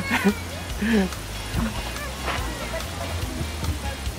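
Faint, brief voices over quiet background music, with no distinct sound event.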